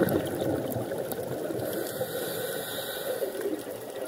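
Scuba regulator exhaust bubbles heard underwater: a diver exhaling, a long bubbling rush.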